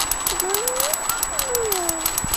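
Rapid, even clicking, like a small mechanism ratcheting, with a faint voice sliding up and down in pitch in the background.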